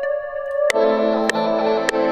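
Synth music playing back from an Omnisphere instrument in FL Studio: a held chord, then about 0.7 s in a fuller, louder layer of notes comes in. Sharp clicks fall evenly about every 0.6 s after that.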